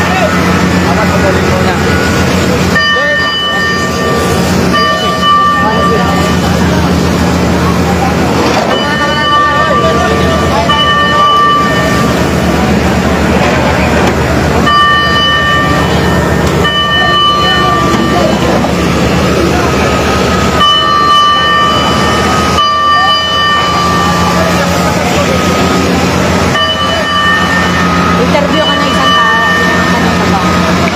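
A fire truck engine runs with a steady low hum under a constant noisy rush. Over it, a horn-like signal sounds two steady tones of about a second each, and the pair repeats about every six seconds.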